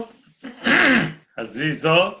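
A man clearing his throat once, a rough, rasping burst about half a second long, then carrying on talking. He says his throat is in quite bad shape from the cold.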